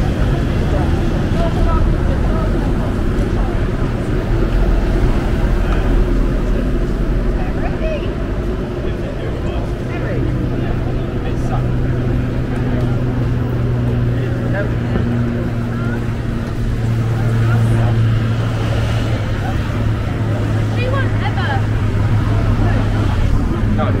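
Busy street ambience: motor vehicle engines running and passing, with a steady low engine hum through the middle, and people talking nearby.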